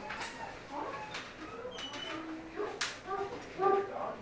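Pet pig making short grunts and squeals into an anesthesia induction mask as it is gassed down, the loudest calls near the end.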